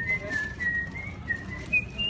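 A person whistling a tune: one clear pitch stepping up and down, climbing higher near the end.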